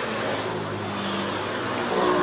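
A motor running steadily with a faint hum over a steady hiss of noise.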